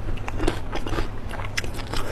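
Close-miked chewing of a mouthful of food: a string of short, irregular wet mouth clicks, over a low steady hum.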